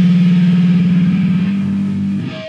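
A loud, steady low electric drone from the band's amplified instruments, one low tone with overtones, holding without a break.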